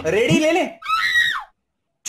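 A voice exclaims briefly, then lets out a shrill scream that falls in pitch and cuts off suddenly to silence about three-quarters of the way through.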